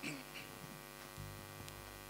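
Faint, steady electrical mains hum from the amplified sound system between a sung phrase and the band's entry, with a lower hum coming in just over a second in.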